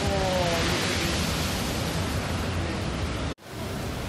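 Storm surf from a typhoon crashing against a seawall, mixed with strong wind, making a loud, steady roar of rushing noise. It cuts off abruptly near the end.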